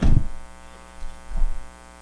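Steady electrical mains hum with a buzzy stack of overtones, carried through the lectern microphone's sound system. There is a low thump right at the start and a softer low bump about a second and a half in.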